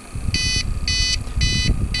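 APC Back-UPS RS 1500 on-battery alarm beeping four times, about two short high-pitched beeps a second: the sign that the UPS has lost mains power and is running on its battery. A low rumble runs underneath from just after the start.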